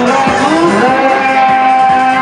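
Live dero dance music from an electone keyboard band. About half a second in, a note slides up and is held steady for over a second above the beat.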